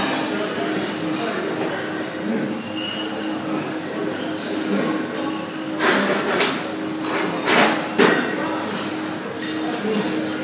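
Gym room sound: indistinct background voices over a steady hum, with a few short noisy bursts past the middle and a sharp knock about eight seconds in.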